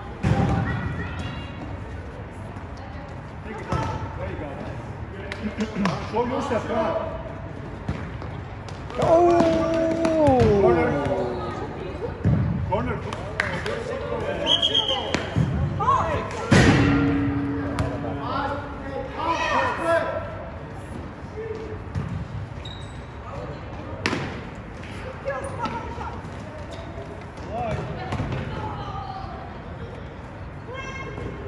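A futsal ball being kicked and bouncing on a hardwood gym floor, with sharp thuds every few seconds, amid shouts from players and spectators, including a long falling call about nine seconds in.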